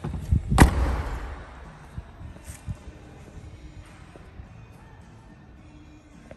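Rear hatch of a 2017 Volkswagen Golf R swung down and slammed shut: one loud slam about half a second in.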